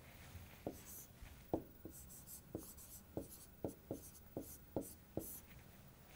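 Faint writing on a board: a run of about ten short tapping strokes with light scratches as a tick, an answer and an underline are written.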